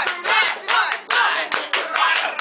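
Hand clapping by people in a room, a run of sharp claps mixed with voices.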